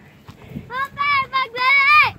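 A high-pitched voice sings a short run of held, steady notes without words, starting under a second in.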